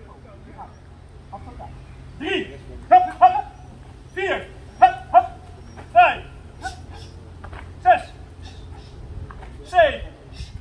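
Short, loud vocal calls repeated about a dozen times from about two seconds in, each dropping in pitch, several coming in quick pairs.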